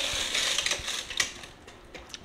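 A dog eagerly eating pieces of steak from a bowl on the floor: quick, irregular clicking and smacking of mouth and teeth against the bowl, busiest in the first second and thinning out after.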